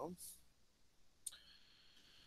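Near silence broken by a single faint sharp click a little past a second in, followed by a faint thin high tone.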